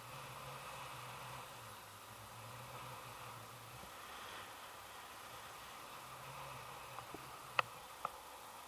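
Faint steady rush of air during a paraglider flight, with a few sharp clicks near the end, the loudest about half a second before the end.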